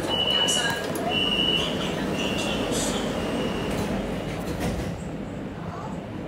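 Shenzhen Metro Line 3 train running in a tunnel, its steady rolling noise broken by several short high-pitched squeals from the wheels or brakes in the first few seconds. The noise drops about five seconds in as the train slows into a station.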